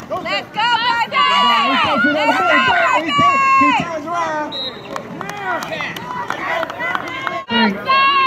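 Sideline spectators shouting and cheering, many raised voices overlapping at once; the noise swells just after the start and drops out briefly near the end.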